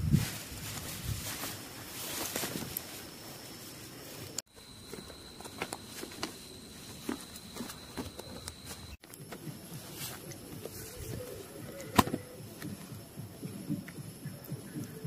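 Nylon tent fabric rustling and crinkling as a dome tent is handled and pitched, with scattered footsteps and small knocks on dry grass. A faint steady high tone runs through the middle, and a single sharp click comes near the end.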